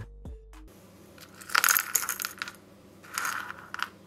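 Small electronic components (capacitors, resistors, an IC, terminal blocks) dropped by hand onto a cutting mat, clattering and rattling in two bursts of sharp little clicks.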